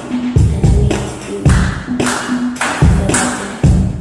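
Dance music playing loudly with a steady, heavy bass beat and sharp claps or snare hits between the beats.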